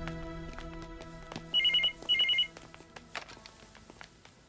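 A telephone ringing once with a double ring: two short trilling bursts about half a second apart, after background music fades out.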